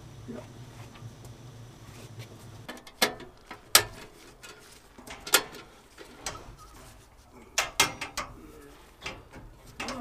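Sharp metallic clicks and knocks, several seconds apart, as the sheet-metal casing of an old Vaillant combi boiler is handled and refitted. Before them, a low steady hum stops about three seconds in.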